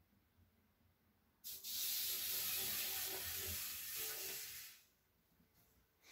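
A steady spray-like hiss that starts suddenly about a second and a half in, runs for about three seconds and fades out.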